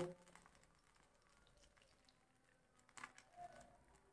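Near silence. About three seconds in come a few faint, short sounds as mustard oil begins pouring into an empty steel kadai.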